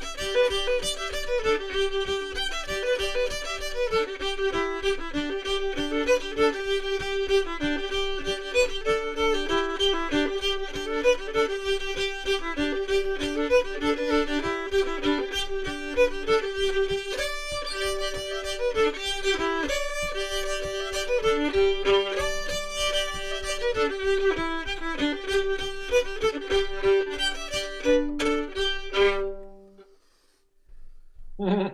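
Solo old-time fiddle tune, bowed, with a steady drone note held under the melody. The tune ends about a second before the end.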